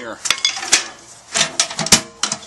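A hammer striking the steel lid of a .50 caliber ammo can about half a dozen times in quick, uneven knocks, the loudest near the end. The blows pound down the section where the latch hooks onto the lid, to tighten it again now that its rubber gasket has been taken out.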